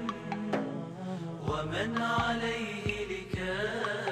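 Instrumental-free Arabic nasheed interlude between verses: a vocal chorus hums a wordless melody over a percussion hit about once a second. The sound is dulled by its transfer from cassette tape.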